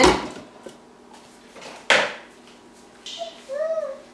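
Glass mixing bowl set down onto a KitchenAid stand mixer's metal bowl plate with a knock, then a sharp clack with a short ring about two seconds in as it locks into place, glass against metal.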